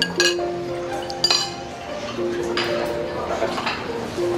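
Light clinks of serving utensils and glassware against dishes at a buffet counter, two sharp ones about a fifth of a second and a second in, over background music with held notes.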